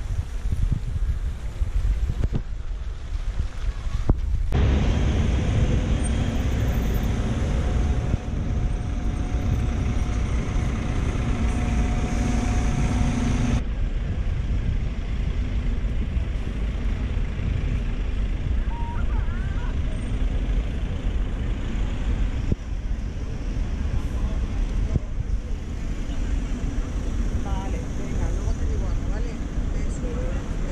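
Outdoor city street noise with a heavy low rumble of wind buffeting the camera microphone, and traffic underneath. The sound changes abruptly about four and a half seconds in and again about thirteen and a half seconds in, with a steady low hum between.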